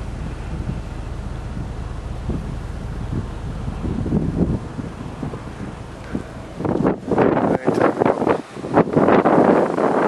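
Storm wind blowing on the microphone, a steady rush at first, then loud irregular gusts buffeting it from about seven seconds in.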